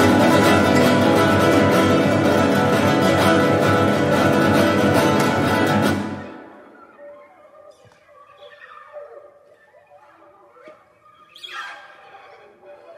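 Classical guitar ensemble with an Iranian setar playing loudly in dense, rapidly repeated plucked chords. The music breaks off sharply about halfway through, leaving only faint scattered sounds.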